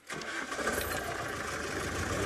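Open safari vehicle's engine starting up, then running steadily so the vehicle can be moved.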